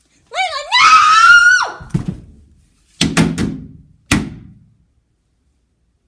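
A loud, high shriek that swoops up and down in pitch for about a second and a half, followed by a run of thumps: one, then three in quick succession, then a last one.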